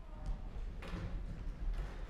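Footsteps and small knocks on a wooden stage floor as performers shuffle into place, with two short rustles, one a little under a second in and one near the end, over a low hall rumble.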